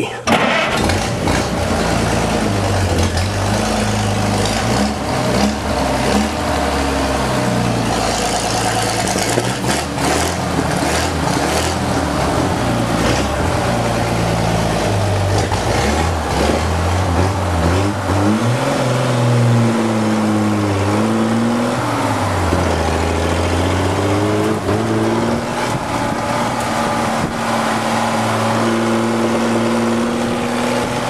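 Rat rod's supercharger-topped engine starting up just after the start, then running and being revved, its pitch rising and falling several times in the second half.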